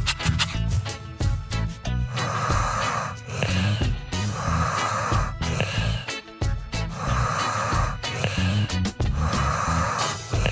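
Cartoon snoring sound effect: four even snores about two and a half seconds apart, starting about two seconds in, over background music.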